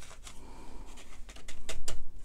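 Copper cardstock being handled while excess dry embossing powder is tipped off it onto paper. This gives a run of small clicks and taps, sparse at first, then louder and closer together near the end.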